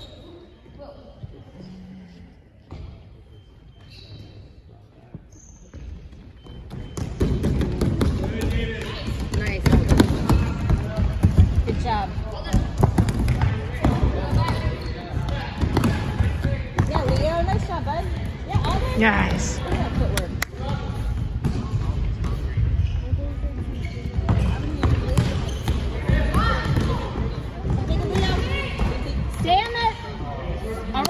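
Soccer ball kicked and bouncing on a gym's wooden floor, with players' and onlookers' voices around it; fairly quiet at first, it grows much louder and busier about seven seconds in.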